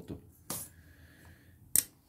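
Two sharp metallic clicks from an 8 mm wrench being handled over an open motorcycle cylinder head, about a second apart. The second click is louder, and a faint ring follows the first.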